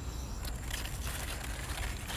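Light rustling and crackling of cantaloupe leaves being pushed aside by hand, with a few faint clicks, over a low steady rumble.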